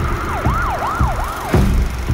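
A siren-like wail sweeping up and down about three times, over deep bass thumps, the sound design under a movie trailer's title card.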